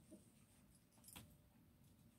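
Near silence: room tone, with one faint click a little over a second in.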